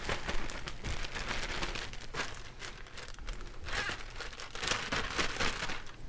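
A plastic zip-top bag of flour and seasoning crinkling in irregular bursts as it is worked by hand to mix it.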